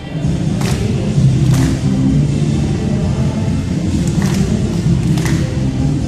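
Loud dance music played back for a group dance routine, heavy and boomy in the low end as heard in a large hall, with a few sharp hits standing out.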